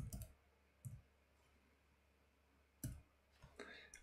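Faint computer keyboard keystrokes as a word is typed: a few separate clicks, about a second or two apart, over a steady low hum.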